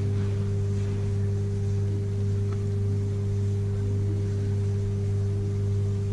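A steady low electrical hum: a few fixed low tones that do not change.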